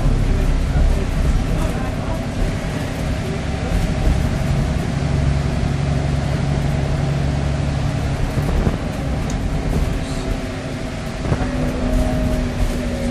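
Alexander Dennis Enviro400MMC double-decker bus heard from inside while under way, its Cummins diesel engine and Voith automatic gearbox running. A steady low hum holds for a few seconds mid-way, and a higher tone comes in near the end.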